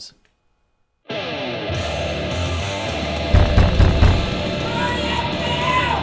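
Loud heavy rock music with electric guitar played through an Edifier bookshelf speaker, starting about a second in after silence. A few heavy low thumps about halfway through stand out as the loudest sounds.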